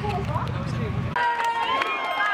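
People talking over a low rumble; about a second in the sound cuts abruptly to other voices without the rumble.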